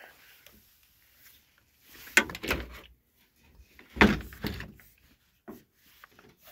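Handling noise: two brief knocks, each followed by about a second of rustling, about two and four seconds in, the second with a dull thump.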